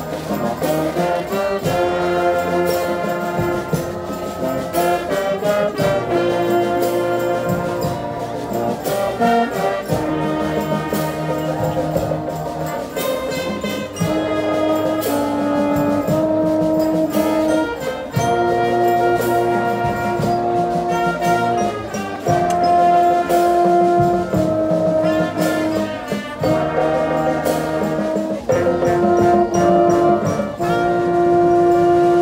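Brazilian marching band (banda marcial) playing a Christmas-song arrangement: the brass section holds the melody in long sustained phrases, over regular percussion hits.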